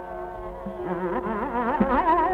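Hindustani classical vocal recording: over a steady tanpura drone, a singer's voice comes in about a second in with a fast, rapidly wavering taan run, and a tabla stroke lands near the end.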